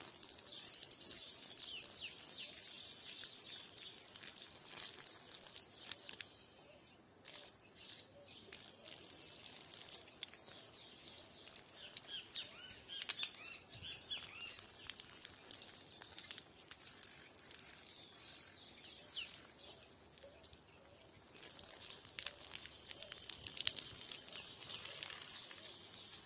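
Small birds chirping and calling at intervals, with a few short high whistled notes, over a faint steady hiss.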